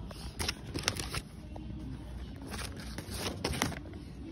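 Handling noise from a phone being carried while walking: two clusters of quick clicks and scrapes, one near the start and one past the middle, over a steady low rumble.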